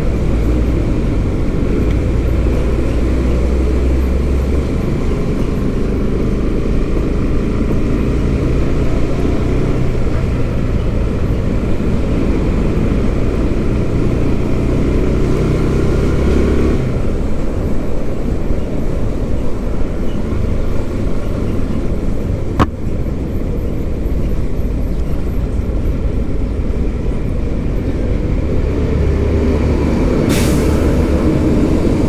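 Steady low engine rumble and road noise of slow traffic close behind a city bus. An engine note rises a little past the middle and drops away, and there is a single sharp click about three-quarters of the way through.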